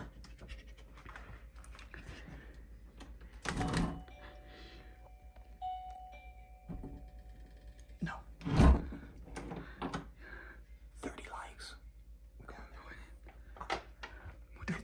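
A bell hung on a door rings as the door is opened, holding a steady tone for a few seconds. A loud thump comes about three and a half seconds in and another about eight and a half seconds in.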